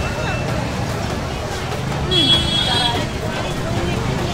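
Busy street ambience: steady chatter of passers-by over traffic noise, with a brief high-pitched tone, like a horn, about two seconds in.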